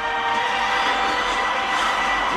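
Film trailer soundtrack: a loud, steady rushing noise, like a burst of fire, with sustained music notes beneath it.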